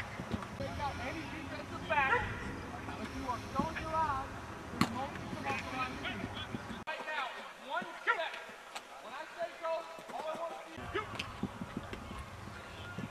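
Indistinct voices of players and coaches calling out across an open sports field, with a few sharp knocks, the loudest about five seconds in. A low background rumble drops out for several seconds after the middle.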